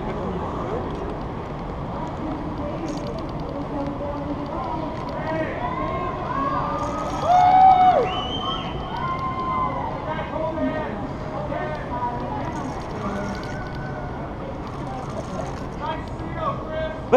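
Faint, distant voices talking over a steady outdoor background noise, with one louder stretch of voice about seven seconds in.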